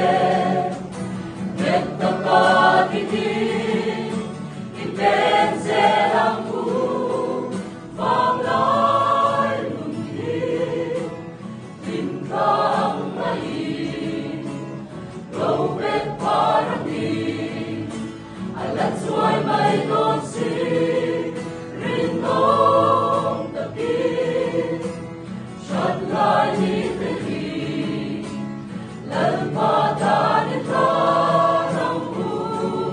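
Mixed-voice choir singing a gospel hymn in Mizo in parts, the sung phrases swelling and falling every few seconds, with an acoustic guitar accompanying.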